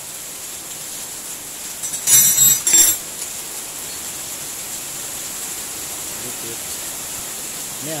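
Metal hand tools clinking and clattering twice, loud and short, about two seconds in, over a steady hiss.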